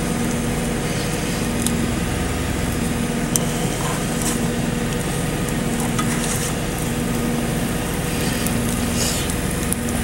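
Cheese omelette sizzling steadily in a frying pan, over a constant low hum, with a few faint ticks.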